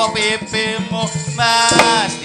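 Javanese gamelan music with a woman singing over it and hand-drum strokes.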